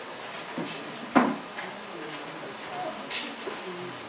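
A single hard knock about a second in, the loudest sound, and a lighter, sharper click just after three seconds, over a low murmur of voices.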